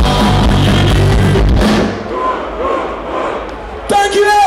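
A punk rock band playing loudly live through a big hall's PA, the music stopping about two seconds in; the crowd then cheers and shouts.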